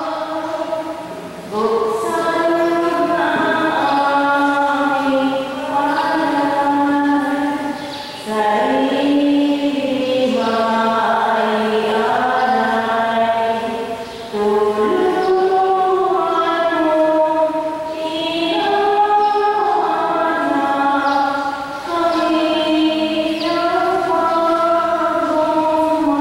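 Slow liturgical chant sung in long, held notes, in phrases of several seconds with short breaks between them.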